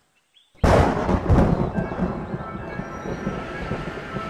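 Sound effect of a sudden strong gust of wind: a loud rushing noise breaks in suddenly about half a second in and slowly eases off, with music faintly beneath.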